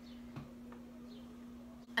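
Quiet room tone with a steady low hum, and a faint soft knock about half a second in.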